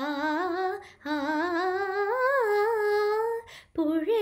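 A girl singing a Malayalam light-music song unaccompanied, holding long notes with vibrato that climb gradually in pitch. There is a short breath about a second in and another near the end.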